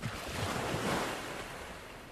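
Surf sound of a wave rushing in: a sudden onset that swells to its loudest about a second in and then eases off.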